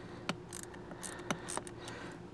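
A handful of short, sharp clicks and taps from hands working on a plastic Rain Bird sprinkler valve inside its valve box, over a faint steady background hiss.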